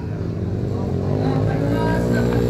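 Motocross dirt bike engine approaching on the track, its note rising and growing louder as the bike comes closer.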